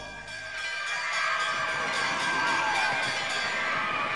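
A crowd of children shouting and cheering over background music, the voices swelling up during the first second.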